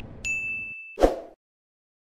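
Bell-like ding sound effect: one bright, sharply struck tone that rings steadily for about three-quarters of a second, followed by a short thump about a second in, after which the sound cuts off to silence.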